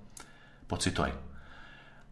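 Speech: a short pause in a man's talk on a studio microphone, with one brief vocal sound a little before the middle.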